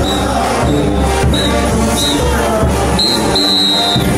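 A morenada played live by a brass band with large bass drums; the low drums drop out for about the last second.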